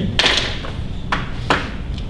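Sheets of paper rustling as a handout is handled, followed by two short clicks, the second sharper, about a second and a second and a half in, over a low steady room hum.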